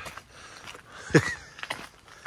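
Footsteps on wet ground, with a short breathy vocal sound about a second in and a few light clicks after it.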